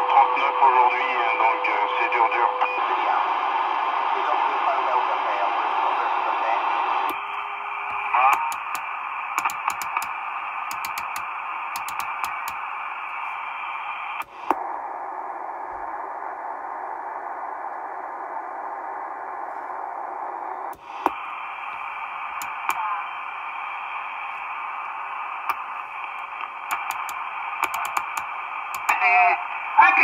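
Marko CB-747 CB radio's speaker giving out narrow-band static hiss with faint, garbled distant speech as the set is stepped across channels. The sound changes abruptly about seven seconds in and again around fourteen and twenty-one seconds. Runs of clicks and crackle come in between.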